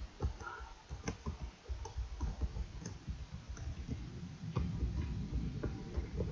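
Typing on a computer keyboard: irregular, quick key clicks.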